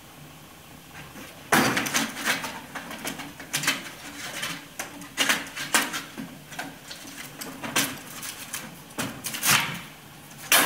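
Stainless-steel flue pipe parts scraping and knocking together as a coupling piece is slid onto a double-walled insulated T-piece: a sharp knock about a second and a half in, then a string of scrapes and clunks.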